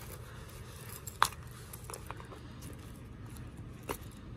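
Metal snap fastener on a small leather coin pouch popping open with one sharp click about a second in, followed by faint handling and small clicks, and another short click near the end.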